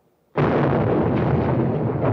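A sudden loud rumbling roar of explosions breaks in about a third of a second in and keeps going, with sharper bursts through it.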